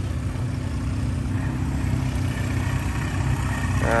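Cruiser motorcycle engine running steadily at low speed as the bike is ridden slowly past, growing a little louder near the end as it comes closer.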